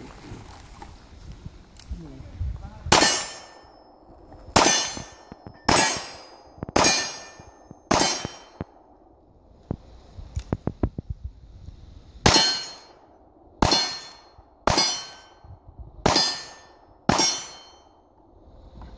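Single-action revolver shots at steel targets: two strings of five, roughly a second apart, each shot followed by a ringing clang of steel. Between the strings there is a quick run of light clicks.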